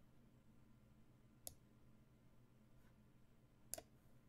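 Two short, sharp clicks about two seconds apart, the second one doubled, as moves are made in an online chess game, over near-silent room tone.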